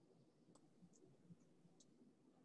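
Near silence: faint room tone with four short, sharp clicks about 0.4 s apart, starting about half a second in.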